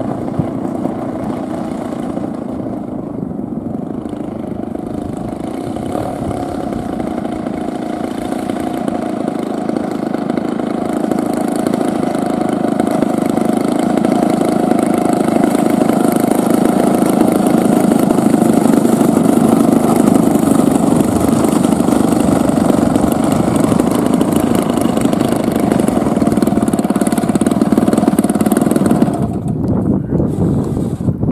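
Radio-controlled model airplane's engine and propeller running at low throttle as the plane taxis, growing louder as it comes closer, then dropping away sharply near the end.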